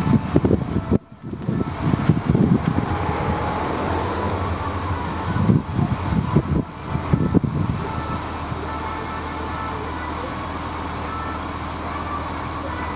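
A party bus engine idling with a steady low hum, with wind rumbling on the microphone in the first few seconds and again around the middle.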